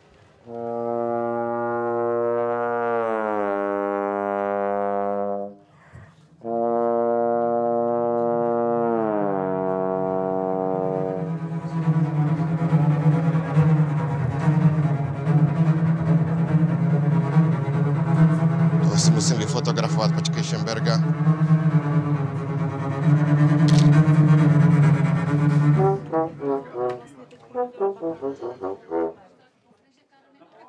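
A lone brass instrument holds two long low notes, each sliding down in pitch near its end. About eleven seconds in, a full orchestra comes in with loud sustained chords and a strong low brass and string register, which break off near the end.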